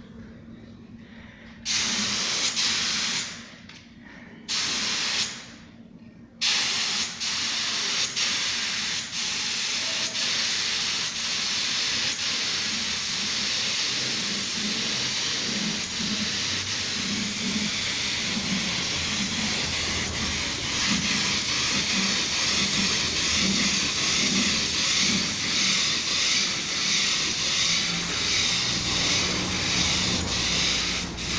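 Gravity-feed paint spray gun hissing as compressed air atomises paint: two short bursts, then a continuous spray from about six seconds in.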